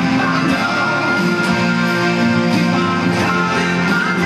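Electric guitar played along with a hard-rock song recording, the band and guitar sounding together steadily.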